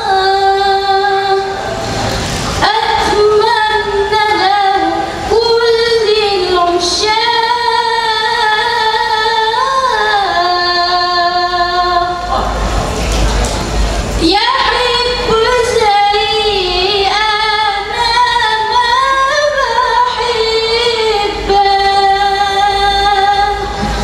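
A woman singing a melismatic qasidah melody into a microphone over a PA, with long held notes that slide between pitches. The singing is broken twice by a few seconds of noisy rushing sound, about two seconds in and again around twelve seconds in.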